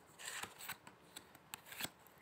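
A deck of round tarot cards being shuffled by hand, faint: a brief papery rustle near the start, then a handful of light, sharp card snaps.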